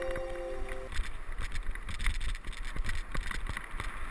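Mountain bike riding down a rough grassy trail: wind noise on the camera's microphone with irregular rattles and knocks from the bike over bumps. Background music cuts off about a second in.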